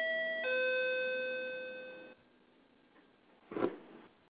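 Teleconference system's two-note electronic chime, a high note stepping down to a lower one and fading out about two seconds in, the kind of tone a conference bridge plays as callers leave. A brief noise follows near the end.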